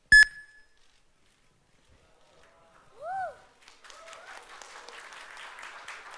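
A single sharp electronic ding with a short ringing tone at the very start, the loudest thing here, answering the command to turn on the lights. About three seconds in comes a brief rising-and-falling tone, and from about three and a half seconds on an audience applauds lightly.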